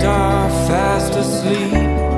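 Acoustic song: a voice singing over acoustic guitar and a sustained bass.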